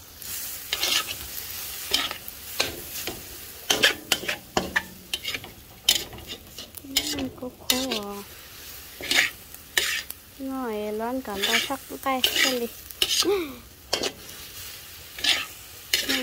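Metal spatula scraping and knocking against a metal wok in quick, irregular strokes, over a steady sizzle of glass noodles and minced pork frying.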